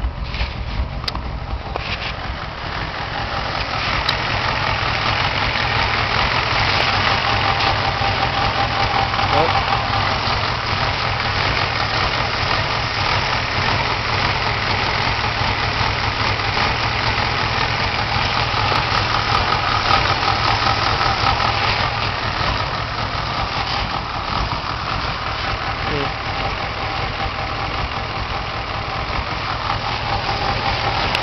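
Carbureted Ford 302 V8 idling steadily while it warms up from a cold start, louder from a few seconds in.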